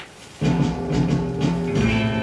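A 7-inch vinyl single playing on a turntable: faint surface hiss and clicks from the lead-in groove, then about half a second in the soul record's band intro starts suddenly and loudly.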